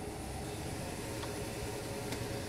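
Steady background noise inside a pickup truck's cabin: an even hiss over a low hum, typical of the ventilation fan and a running vehicle.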